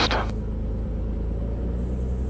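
The Cirrus SR22's Continental IO-550 six-cylinder engine running steadily with its propeller, heard from inside the cabin as a low, even hum.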